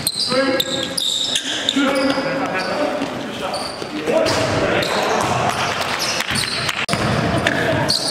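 A basketball being dribbled and bounced on a gym's hardwood floor, many short sharp impacts, among players' shouting voices in a large gymnasium.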